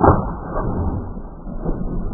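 A 12-gauge Benelli M2 shotgun blast right at the start, the shot that kills the turkey, followed by a continuous loud, muffled rumble with repeated thuds.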